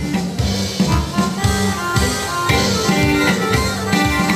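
A live band playing amplified instrumental dance music, with a steady drum-kit beat under guitar and keyboard-like melody lines.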